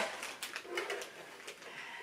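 Faint handling noise: a plastic-bagged sewing machine foot pedal set down on a table and the machine taken hold of, with soft scattered rustles and knocks.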